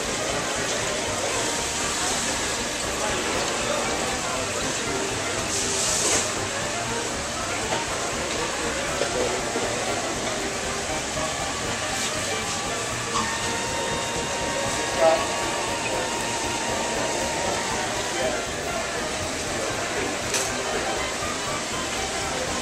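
Steady rush of water circulating through aquarium tanks, with faint indistinct voices in the background.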